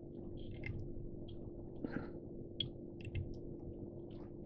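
Faint scattered small clicks and rustles of fingers winding pheasant-tail fibres around a hook in a fly-tying vise, over a steady low hum.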